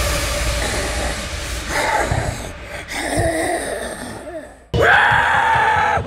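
Glitchy horror sound effects in place of the music: a noisy, static-like hiss with warbling, bending tones that fades away, then a sudden loud burst of noise about five seconds in.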